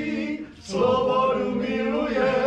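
A group of men singing unaccompanied in harmony, holding long notes, with a short break about half a second in before the next line begins.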